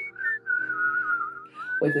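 A whistled tune: a single high tone that wavers and dips in pitch, over soft background guitar music. A voice comes in near the end.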